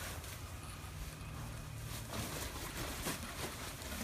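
Quiet outdoor background: a faint steady low hum with light rustling and a few soft ticks.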